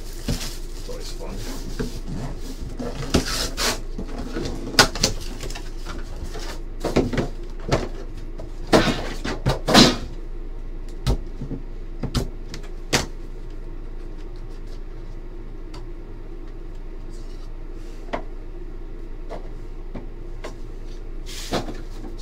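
Hands unwrapping and opening Panini Immaculate hobby boxes: plastic wrap crinkling and cardboard box parts sliding, scraping and clicking, busy for about the first ten seconds, then only a few isolated clicks and knocks over a steady low room hum.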